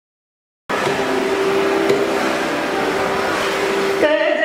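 The recording cuts in suddenly just under a second in: a loud, steady noise of electric fans in the hall, with a few faint steady tones underneath.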